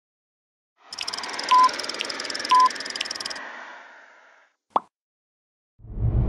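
Electronic sound effects for an animated logo: a hissing bed with ticks about twice a second and two short beeps, fading out, then a single short pop. A loud low whoosh starts at the very end.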